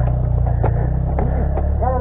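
A dirt bike engine idling steadily with a low hum, with faint voices over it.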